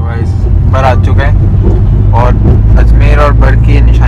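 Steady low rumble of a moving car heard from inside the cabin, with people talking over it in short bursts.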